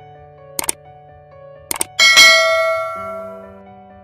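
Subscribe-animation sound effects: two quick double clicks like a mouse button, about a second apart, then a bright bell-like notification ding that rings out and fades over about a second and a half, over soft background music.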